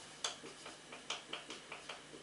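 Marker pen writing on a whiteboard: a run of short scratchy strokes and taps, several a second and unevenly spaced, as letters are drawn.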